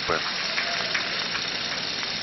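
Arena audience applauding steadily at the end of an ice-dance program.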